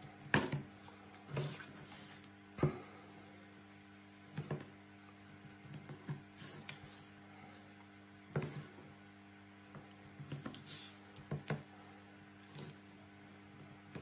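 White craft tape being pulled off its roll, torn and pressed down along cardstock: scattered short crackles, clicks and taps of tape and card handling, a second or two apart.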